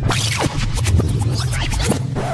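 Routine music breaking into DJ turntable scratching: a run of quick, stuttering scratch sweeps over a steady bass line.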